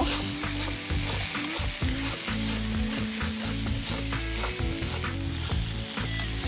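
Chef's knife slicing a fennel bulb on a wooden cutting board in quick, irregular strokes, over the steady sizzle of pork chops searing in a hot pan.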